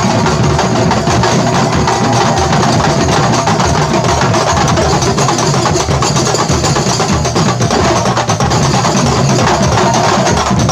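Kuntulan percussion ensemble playing: terbang frame drums, kendang barrel drums and large bass drums beaten together in a loud, fast, unbroken rhythm.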